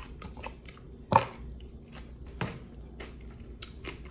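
Close-up chewing of a mouthful of cereal, with small crisp crackles throughout. Two sharper clicks, about a second in and again past two seconds, come from a metal spoon touching the ceramic bowl.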